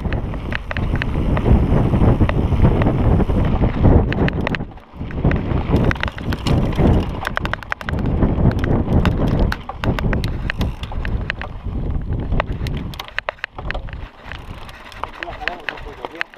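Gusty crosswind buffeting the action camera's microphone in a heavy, uneven low rumble, over the rattle and clicks of a mountain bike rolling down a loose, rocky trail. The buffeting drops out briefly about five seconds in and eases off over the last few seconds.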